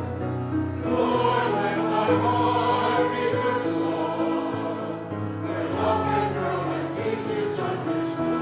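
Mixed church choir of men and women singing together with accompaniment, low notes held steady beneath the voices.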